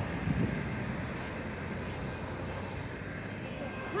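Steady road traffic noise, an even hiss that eases slightly over the few seconds.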